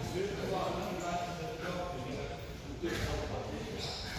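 Indistinct background talk from several people in a wrestling training hall, with no clear words.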